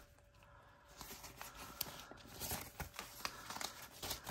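Paper banknotes rustling faintly as a stack of bills is handled and thumbed through, after a nearly silent first second, with scattered small flicks and clicks.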